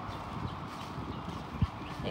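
Footsteps of a person walking over grass and dry leaves, with uneven low handling rustle and one sharp thump about a second and a half in.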